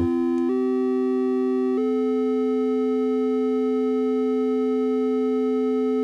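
Two Intellijel Dixie analogue oscillators sounding together, the second on its triangle wave: a steady lower note and an upper note that steps up in pitch twice in the first two seconds, then holds. The upper note's jumps are the interval between the oscillators being changed on the Scales quantizer.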